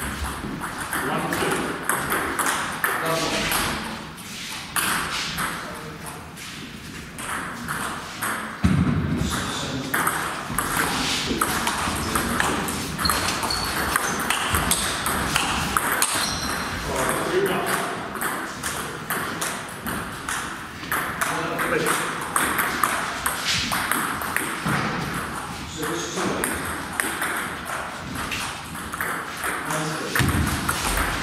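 Table tennis rallies: the ball clicking off rubber-faced bats and bouncing on the table in quick ticks, with breaks between points. A loud thump about nine seconds in, and voices in the hall.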